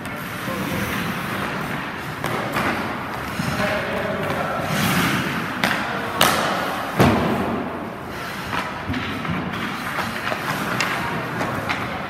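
Ice skates scraping over the rink ice, with scattered clacks of stick and puck. About six seconds in comes a sharp crack of a shot, followed by a low thud.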